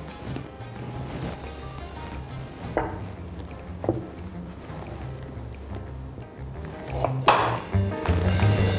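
Background music with a steady bass line, over which a kitchen knife strikes a wooden cutting board a few times, the loudest knock near the end.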